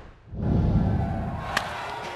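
TV broadcast transition stinger: a whoosh into a deep boom with a short musical hit. Then ballpark ambience, with one sharp crack of a bat hitting the ball about a second and a half in.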